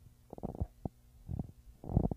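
Low, muffled thumps and rumbles from the camera and microphone being handled, in a few short clusters.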